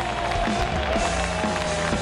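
Background music with a long held note that slowly falls in pitch.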